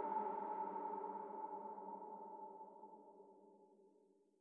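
Closing held electronic chord of a deep drum and bass track: several steady pitches sound together with no beat and fade out steadily, almost gone by the end.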